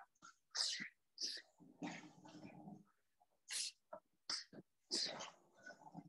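Short, sharp exhalations through the mouth, about seven faint breathy bursts under a second apart, timed to the strikes of a shadowboxing punch-and-elbow combo.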